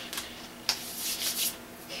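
Dry rubbing and scrubbing on the paper of an art-journal page as paint is worked in for texture: a brief stroke, then a longer one lasting just under a second, then another brief one.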